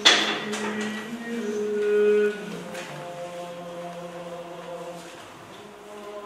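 Choir singing slow, long-held chords. The sound begins abruptly at full strength, swells to its loudest about two seconds in, then drops back to a softer held chord.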